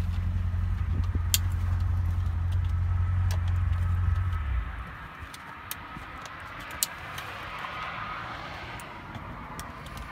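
A few sharp plastic clicks as wiring connectors are plugged into a GM truck's body control module under the dash. Under them a low steady rumble runs through the first half and fades out about halfway through.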